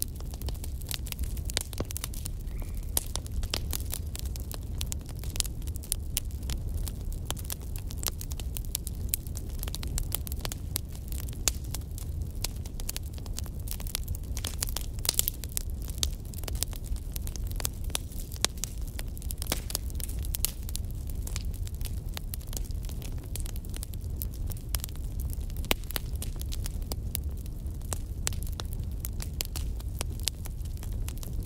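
Wood fire burning in a fireplace, crackling continuously with many irregular small snaps and pops over a steady low rumble.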